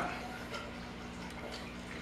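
Quiet room tone with a faint steady low hum, after a man's voice trails off at the very start.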